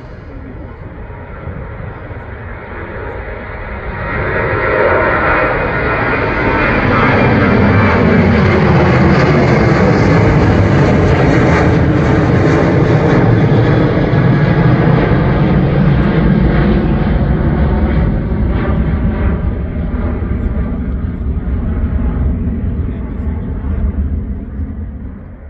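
Ryanair Boeing 737-800's CFM56-7B jet engines at takeoff power as it climbs out and passes overhead. The roar builds, jumps about four seconds in, stays loud with tones sliding downward as it passes, then slowly fades.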